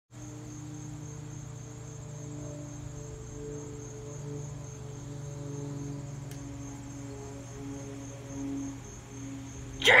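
A steady low hum with a few sustained higher tones that swell and fade slowly, and a faint high pulsing tone above it.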